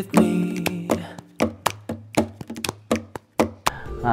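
Rough home demo of a pop song on acoustic guitar: strummed chords with sharp percussive hits on the strings in a steady rhythm, and a held sung note fading out in the first second.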